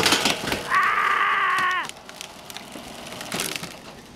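A garbage truck's compactor crushing a couch: the wooden frame cracks and splinters in a quick cluster of snaps, then a long high creak about a second in, dropping in pitch as it stops, with a few more cracks near the end.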